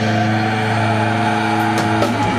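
Live metal band letting a single distorted chord on electric guitars and bass ring out, held steady and loud, with a light cymbal or drum hit near the end.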